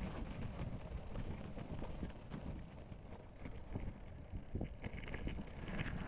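Knobby mountain-bike tyres rolling over sand and gravel, a steady rumble full of small clicks and rattles from the bike, with wind on the camera microphone.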